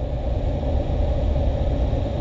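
Steady low rumble with a constant hum over it, like a vehicle engine idling.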